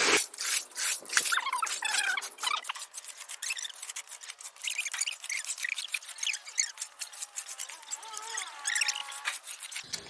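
Long-handled floor broom scraping across wet concrete in quick, repeated strokes, pushing standing water off a flat roof slab.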